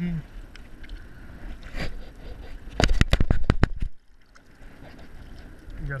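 A hooked needlefish thrashing at the water's surface on a sabiki rig, slapping and splashing. It makes a quick burst of about eight sharp slaps in roughly a second, about three seconds in, over a steady low background of wind and water.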